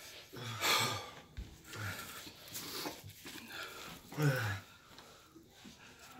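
A man breathing hard and hissing through his mouth in several short breathy bursts with low grunts, reacting to the burn of a superhot chip and hot sauce.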